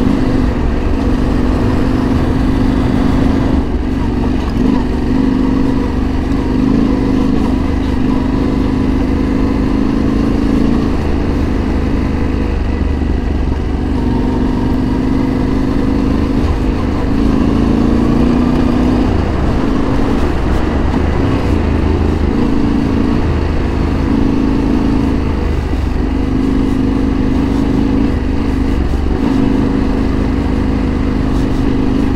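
Yamaha Ténéré 700's parallel-twin engine running as the motorcycle rides on a gravel road. It holds a steady note that dips and rises a little with the throttle, over a constant low road and wind rumble.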